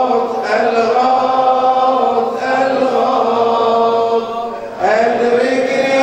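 A man chanting an Arabic supplication (du'a) in long, drawn-out melodic phrases, with a short pause for breath a little over four seconds in.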